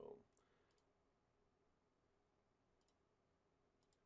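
Near silence with a few faint computer mouse clicks, some heard as a quick press-and-release pair.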